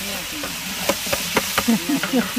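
Food sizzling as it fries in a large metal pot, with a long-handled ladle stirring and scraping in it; several sharp knocks of the ladle against the pot in the second half as green chillies go in.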